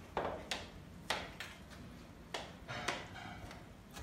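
Cutlery and dishes clicking and clinking at a table laid with food, about six short sharp clicks spread irregularly over a few seconds.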